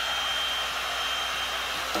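Electric heat gun running steadily, a constant blowing rush with a thin high whine.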